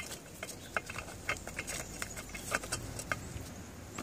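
Lava rocks clicking and tapping against each other and a terracotta pot as they are set in place by a gloved hand, in a string of scattered light clicks.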